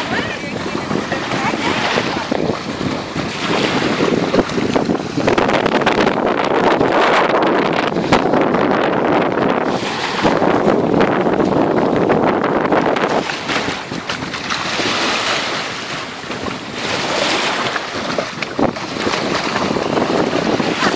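Wind buffeting the microphone, over small waves washing onto a sandy shore; it grows louder for several seconds in the middle.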